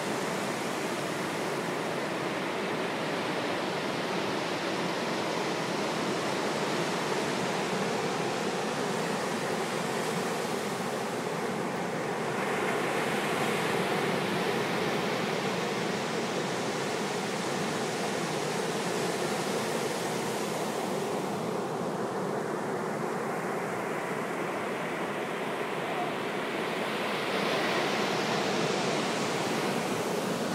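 Ocean surf breaking and washing up the sand in a continuous wash of noise, swelling louder twice, about a third of the way in and again near the end, as waves come in.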